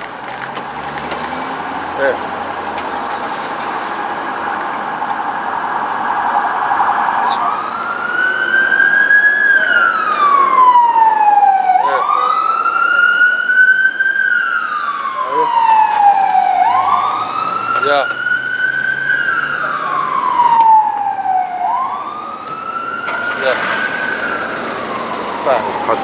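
Ambulance siren: a fast warbling tone for the first seven seconds or so, then a slow wail that rises quickly and falls away slowly, repeating about every four to five seconds.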